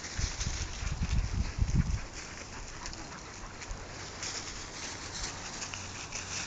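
Low buffeting on the microphone for the first two seconds, then a faint crackling rustle of dry leaf litter as dogs move over it.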